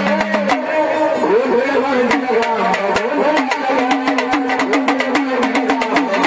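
Gondhal folk music: a man singing a winding, gliding devotional melody over a sambal waist drum and sharp, rapid strokes, several a second, that grow denser in the second half.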